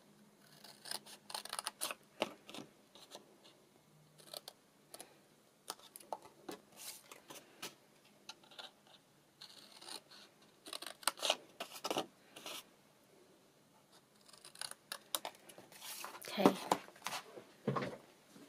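Craft paper snips cutting through card in several quick runs of short, sharp snips, with pauses between the runs.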